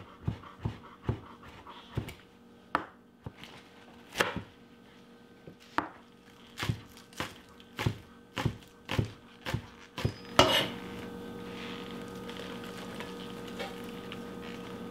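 A chef's knife chopping fresh dill and green onions on a plastic cutting board: a string of sharp, uneven knocks that come quicker in the second half, about three a second, and stop about ten seconds in. A short louder noise follows, then a steady faint hum.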